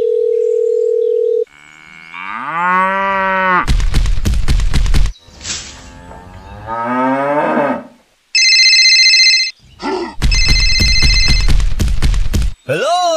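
A string of sound effects. First comes a steady telephone dial tone for about a second and a half. Then a cow moos, a burst of loud noise follows, the cow moos again, and an electronic phone ringtone sounds twice near the end, the second time over loud noise.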